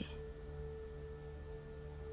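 Soft meditation background music: a single sustained steady tone held over a low, even drone, with no beat.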